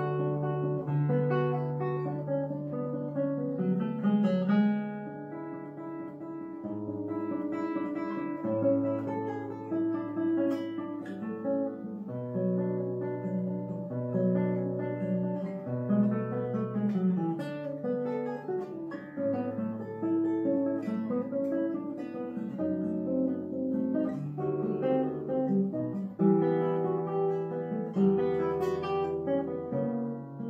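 Solo nylon-string classical guitar played fingerstyle, with held bass notes under a line of plucked melody notes.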